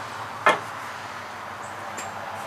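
A single sharp wooden knock about half a second in: the dry walking stick striking the wooden porch. Otherwise only a steady faint hiss.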